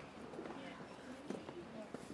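Faint room tone of a hall with quiet murmuring voices and a soft knock a little over a second in.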